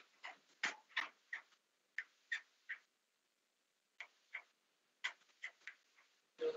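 A series of faint, irregular clicks, about a dozen short ones spread unevenly, heard through a video-call audio feed.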